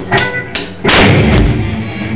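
Live band's drum kit struck hard four times with cymbal crashes, the third hit the loudest and ringing longest, as the band starts into a song.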